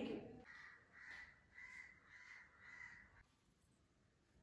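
A bird calling faintly, about five short calls in quick succession, about two a second, ending after about three seconds.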